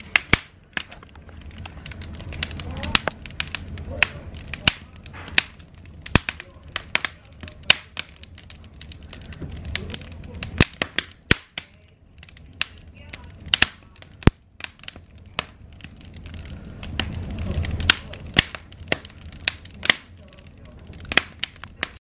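Wood logs burning in a fireplace: irregular sharp crackles and pops, a few a second, over a low rush of flame that swells and fades every several seconds.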